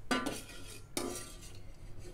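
A metal ladle clinking against dishware twice, about a second apart, each clink ringing briefly, while ladling rice balls in syrup.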